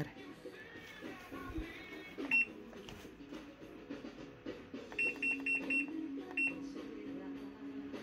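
Top-loading washing machine's control panel beeping as its buttons are pressed: a single short high beep, then a quick run of five and one more a moment later. Faint background music runs underneath.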